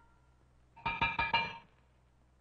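Cartoon sound effect of a conductor's baton tapping on a music stand: four quick, ringing taps in under a second.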